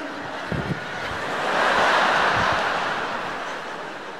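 A large arena audience laughing. The laughter swells to a peak about halfway through and then dies away.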